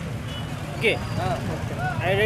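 Low, steady rumble of motorcycle engines and street traffic, with brief snatches of men's voices about a second in and near the end.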